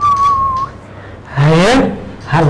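A person whistling one steady high note that dips slightly and stops under a second in, followed near the end by a short voiced sound with rising pitch from one of the men.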